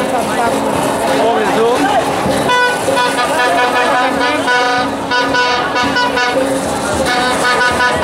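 A ground fountain firework spraying sparks with a steady hiss while people shout around it. From a few seconds in, a steady reedy tone over a constant low drone is held in repeated long stretches.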